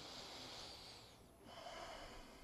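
A man's faint breathing into the microphone in a pause in his speech: two soft breaths, the second starting about a second and a half in.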